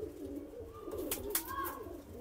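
Domestic pigeons cooing continuously, a low, warbling coo that rises and falls.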